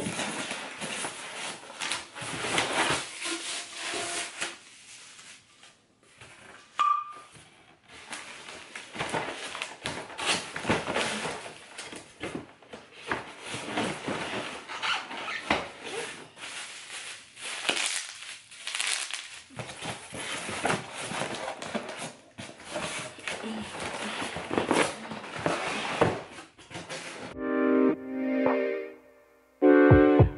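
Cardboard box and styrofoam packing being handled while a hooded hair dryer is unpacked: a continual jumble of rustling, scraping, squeaking and knocks, with a couple of short lulls. Music with a keyboard comes in just before the end.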